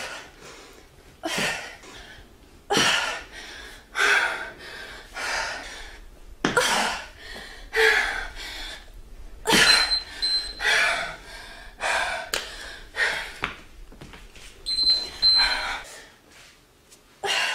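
A woman breathing hard during jump squats, with a forceful exhalation or gasp about every second and a half. A short high beep sounds twice, about ten seconds in and again near the end.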